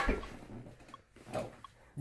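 A man's loud exclamation dying away, then a short, quieter "oh" about one and a half seconds in.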